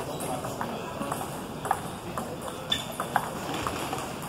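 Table tennis ball clicking off the bats and table in a rally, the hits coming about twice a second from about a second in.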